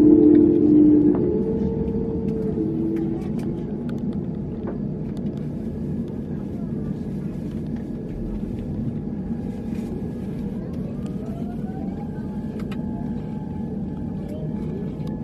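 Airliner cabin noise at the gate: a steady low rumble of the aircraft, with a loud hum that fades over the first couple of seconds. About ten seconds in, a whine rises in pitch for a couple of seconds and then holds steady.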